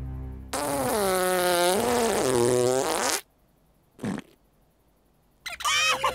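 Cartoon alien's gibberish voice: one long wavering wail that starts about half a second in and cuts off abruptly after nearly three seconds. A short pop follows in the silence, and high squeaky chattering starts near the end.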